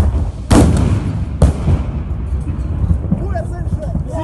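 Three loud weapon blasts in quick succession, the second, about half a second in, the loudest, each with a long echoing tail: close-range fire in street combat. Men's voices start up near the end.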